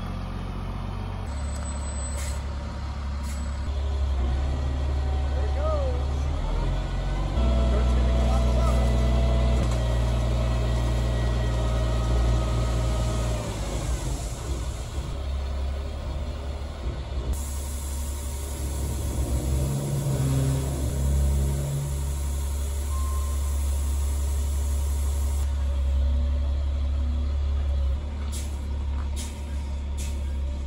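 Diesel dump truck engine running throughout as the truck backs in and tips its load of soil, rising in speed for a few seconds at a time while the hydraulic hoist lifts the bed. During the first of these stretches a steady whine sits over the engine.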